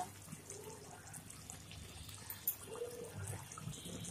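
Faint wet bubbling and dripping of chicken curry gravy simmering in a wok, with thick poppy-seed paste dripping into it.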